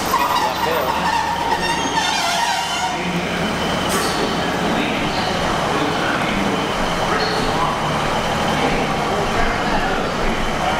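Diesel passenger train pulling into the platform and coming to a stop, its engine running.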